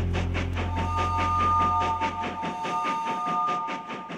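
Train wheels clattering over rail joints in an even clickety-clack, about five beats a second, with a train horn sounding a steady three-note chord from about a second in. A low music note fades out under it.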